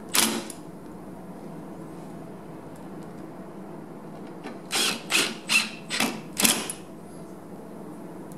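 Hand screwdriver driving screws into the plywood base of a bottle-cutter jig. One short burst comes right at the start, then five short strokes in quick succession a little past halfway.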